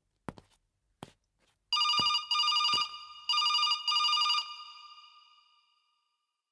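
Telephone ringing: two trilling rings about a second each, the second trailing away, after a few sharp, evenly spaced taps.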